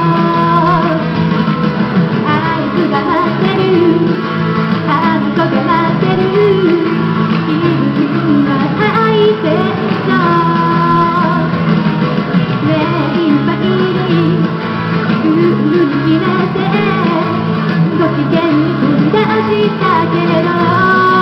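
A woman singing into a microphone over steady backing music.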